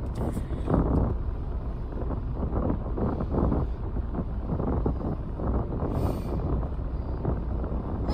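Steady low rumble inside a parked car's cabin, with rustling on the phone's microphone.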